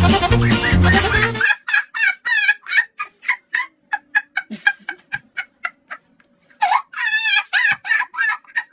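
Loud music with a steady beat that cuts off suddenly about a second and a half in. It is followed by a run of short, repeated clucking calls from domestic fowl, a few a second, with a longer warbling call near the end.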